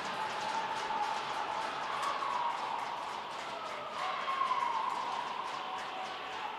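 Echoing ice-rink ambience: faint distant voices and a steady hiss, with scattered light clicks.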